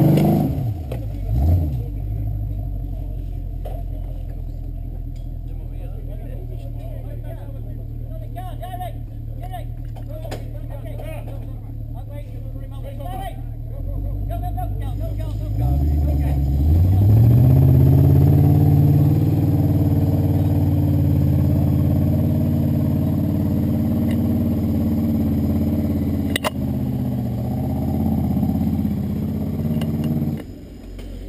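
Off-road Jeep's engine running at a low, steady pitch, then revving up about halfway through and held at high revs as the vehicle climbs a steep slope.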